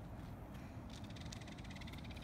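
Low, steady rumble of a car engine idling with the car stopped nearby. About a second in, a fine, rapid high-pitched buzz starts.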